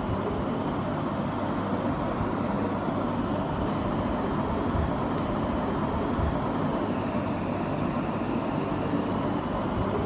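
Steady ambient rumble and background noise with no distinct events, level throughout.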